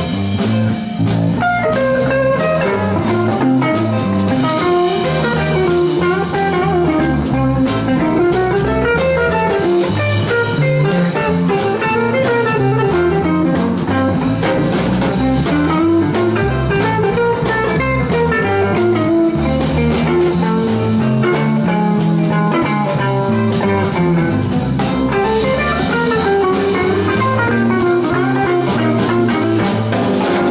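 Live blues band playing an instrumental passage: electric guitar and bass guitar over a drum kit, with melodic runs that repeatedly climb and fall.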